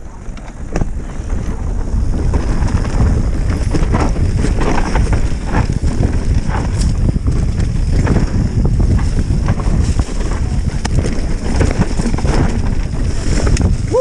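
Wind buffeting a helmet-mounted camera's microphone and the low rumble of mountain-bike tyres rolling down a rough dirt trail, with scattered knocks from the bike. The noise grows louder over the first two seconds, then holds steady.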